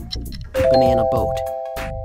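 A bright electronic chime of three bell-like tones struck in quick succession about half a second in, then ringing on and slowly fading, over a background music beat. It is the quiz's time-up signal as the answer is revealed.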